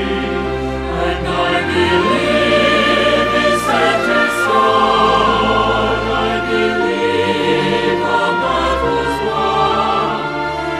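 Mixed choir singing a church anthem in Korean, with instrumental accompaniment and long held bass notes underneath.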